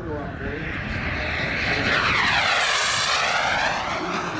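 Small gas-turbine engine of a radio-controlled Jet Legend F-16 model jet making a low pass: a whooshing whine that swells about two seconds in, its tone sweeping down and back up as the jet flies by.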